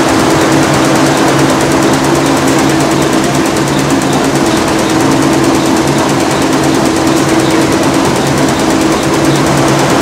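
Multi-head computerized embroidery machine running, its many needle heads stitching together in a fast, even clatter over a constant mechanical hum. It is loud and steady throughout.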